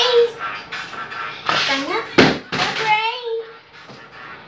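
A young girl's voice making wordless, sing-song sounds that slide up and down in pitch, with a sharp knock about two seconds in.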